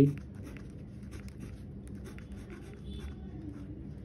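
A pen writing on paper: a run of soft, quick scratching strokes as a short line of figures and letters is handwritten.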